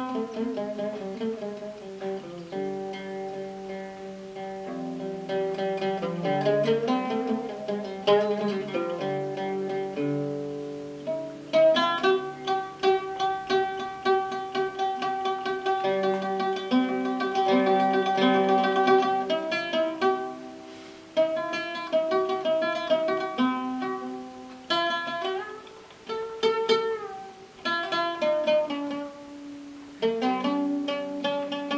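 Solo oud played live: a melody of plucked single notes, with a stretch of fast repeated picking in the middle.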